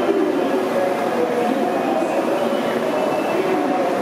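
Busy station platform ambience: the steady hum of a Shinkansen train standing at the platform, mixed with the murmur and footsteps of a crowd of passengers.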